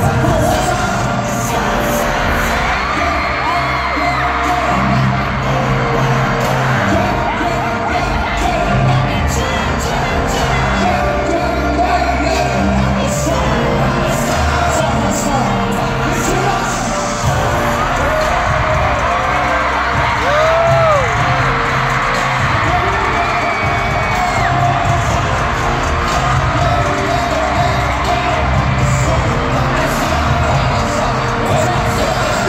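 Live K-pop song played over an arena PA, a male voice singing over heavy bass, with a huge crowd of fans screaming and singing along. It sounds distant and reverberant, as heard from high in the stands.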